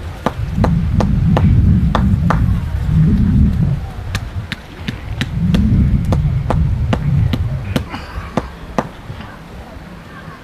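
Dry kava root being pounded with a hand stone on a stone block: a steady run of sharp knocks, about two to three a second, thinning out near the end, over a low rumble that is strongest in the first half.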